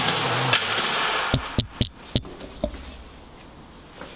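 Wallpaper being handled at the bottom of a wall corner: a loud rustle of paper for about a second, then five or six sharp clicks and taps in quick succession.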